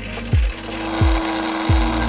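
Manual coffee grinder grinding beans with a steady gritty noise, over background music with a deep kick-drum beat about every two-thirds of a second.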